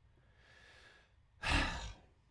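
A man breathing into a close microphone: a faint inhale about half a second in, then a louder, short exhale like a sigh near the end.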